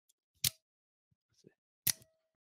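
Microtech Troodon out-the-front automatic knife firing its blade: two sharp metallic clicks about a second and a half apart, each followed by a faint ringing tone from the knife.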